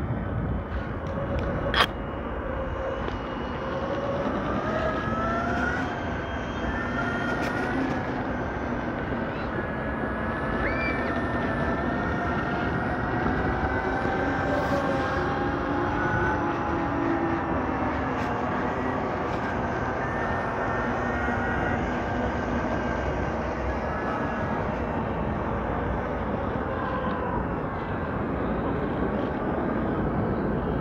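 Whine of several electric motors from e-bikes and electric skateboards riding together, the pitches drifting up and down with speed, over a steady wind and tyre rumble; a sharp click about two seconds in.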